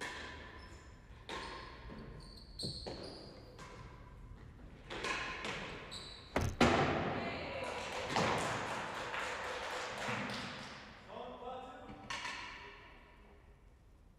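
Real tennis rally: a hard ball struck by racquets and bouncing off the court's floor and walls, each hit ringing in the hall. The loudest strike comes about halfway through, followed by several seconds of dense knocks and noise, and a voice briefly near the end.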